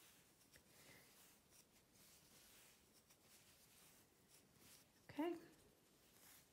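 Near silence: faint rustling of yarn being pulled through loops on a wooden Tunisian crochet hook during the return pass. A brief vocal sound from the crocheter comes about five seconds in.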